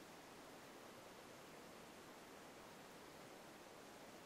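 Near silence: faint, steady hiss of room tone.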